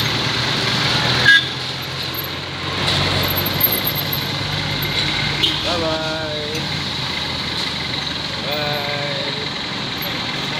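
Street traffic with motorcycle and car engines running and people's voices around, and a sharp loud sound about a second in.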